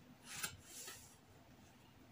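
Two short rubbing swishes on fabric laid flat on a table, a sharper one about half a second in and a softer one just before a second in, as the fabric is worked over while its pattern is being marked.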